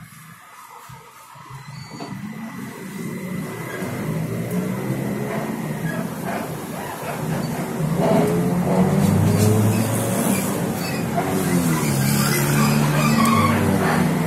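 Cabin of a TrolZa-62052 trolleybus accelerating. The electric traction drive's hum builds steadily over several seconds and its pitch rises as the vehicle gathers speed, over road and cabin noise.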